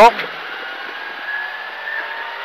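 Škoda rally car at speed, heard from inside the cabin: a steady mix of engine and road noise, with a faint engine note rising slightly in pitch in the second half as the car accelerates.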